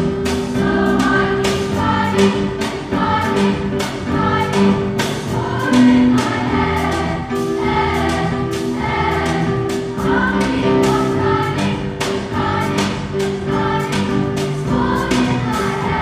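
Massed school choir of children and teenagers singing together, backed by a live band of piano and guitars with a steady beat.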